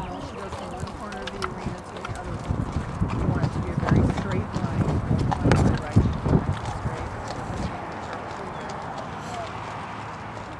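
Hoofbeats of a grey Lipizzan horse trotting on the arena's dirt footing, with a run of louder strokes between about four and six seconds in.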